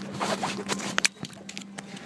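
Handling noise from a camera rubbing and knocking against fabric: a quick run of scrapes and clicks in the first second, the sharpest click about a second in. A steady low airliner cabin hum runs underneath.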